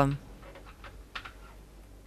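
Faint light taps and clicks of a child's hands working modeling clay on a desktop, with a couple of slightly sharper ticks just past the middle.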